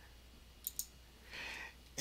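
Two quick computer mouse clicks a split second apart, then a brief faint noise near the end.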